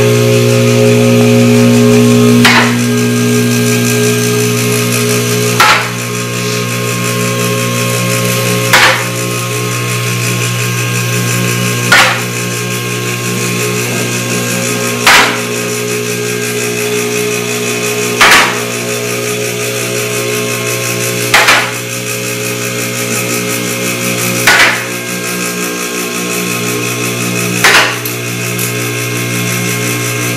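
Vehicle hoist raising a car: the electric pump motor runs with a steady hum while the lift's safety locks clack once about every three seconds as the arms climb past each lock position.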